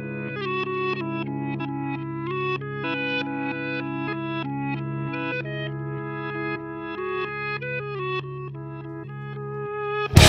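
Rock song intro: an effects-treated guitar picking a quick run of single notes, each one decaying, over steady held low notes.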